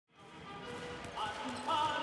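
Basketball arena sound fading in: crowd noise with a voice and music over it.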